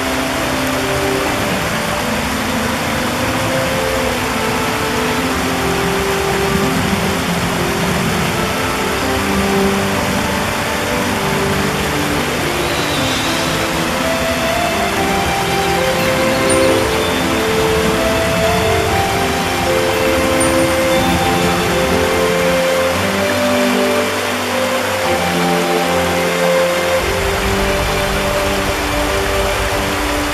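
Shallow stream rushing over rocks in a steady wash of water, with slow, soft music of held notes laid over it; the lowest notes drop out for a few seconds past the middle.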